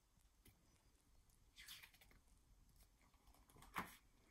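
Mostly near silence, with the faint rustle of a picture book's paper page being turned and a short sharp tap just before the end.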